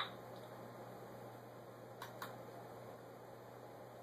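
Quiet room tone with a steady low hum, broken by a faint click at the start and two more faint clicks close together about two seconds in.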